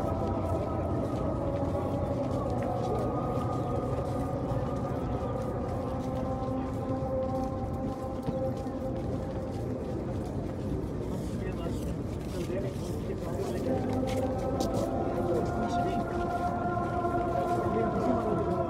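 The Islamic call to prayer (adhan) for Asr, sung by a muezzin over loudspeakers in long, drawn-out melismatic notes with a reverberant echo. One phrase fades out about eight seconds in, and a new held phrase begins about fourteen seconds in.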